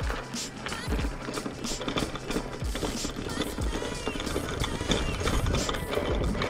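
Mountain bike rattling and clattering over cobblestones, a run of irregular knocks from the wheels and frame, with music playing underneath.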